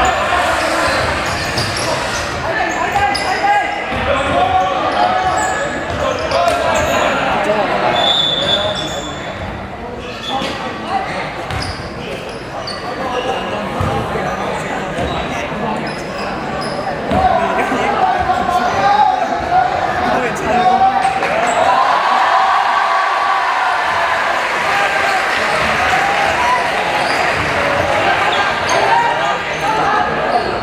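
Basketball game in a gymnasium: the ball bouncing on the court, players' shoes on the floor, and a crowd of student spectators shouting throughout, echoing in the hall. A short high whistle blows about eight seconds in.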